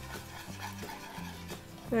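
Whisk stirring a thickening sauce of roux and broth in a metal saucepan, faint and scraping, over soft background music with low sustained notes.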